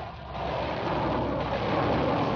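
Loud, steady rushing engine noise of aircraft or missile propulsion, dipping briefly just after the start, then swelling and holding steady.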